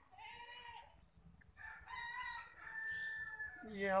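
Rooster crowing: a short call near the start, then a longer drawn-out crow held for about two seconds.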